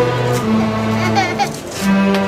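A student string orchestra of violins, cellos and basses playing a slow passage of held notes. A child's voice from the audience cuts across it about a second in.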